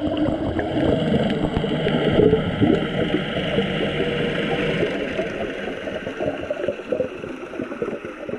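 Underwater ambience picked up by a camera in its waterproof housing: a continuous rumbling wash of water with gurgling, swelling a couple of seconds in and easing off toward the end.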